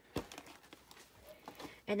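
A single light tap just after the start, as a small paper craft box is handled on a table, followed by faint paper rustling.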